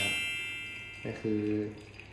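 Chimes ringing out after a quick rising run, fading over about a second. A thin stream of water trickles into a glass server beneath them.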